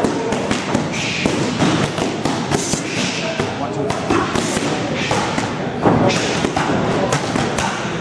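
Boxing gloves punching focus mitts: a quick, irregular run of sharp smacks, with voices in the background.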